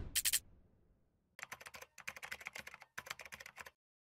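A short transition sound effect right at the start, then rapid keyboard-typing clicks in three runs from about a second and a half in: a typing sound effect laid under on-screen text.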